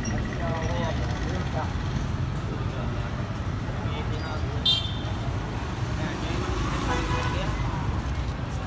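Busy street traffic: a steady low rumble of passing vehicles, with people talking in the background. About halfway through comes one short, high beep.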